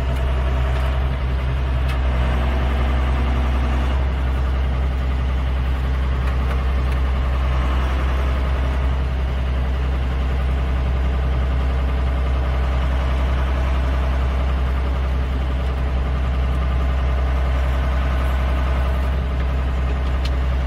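Farm tractor engine running steadily at constant speed, a deep even drone heard from the driver's seat.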